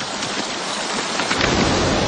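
Stream water rushing and cascading over rocks, a steady noise that grows fuller and deeper about one and a half seconds in.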